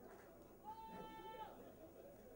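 A person's voice giving one short, high-pitched held call, steady in pitch for under a second and starting just over half a second in, against faint room noise.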